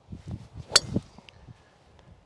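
A Wilson Staff DynaPower driver strikes a golf ball off the tee: a single sharp impact a little under a second in. The ball is struck near the middle of the face.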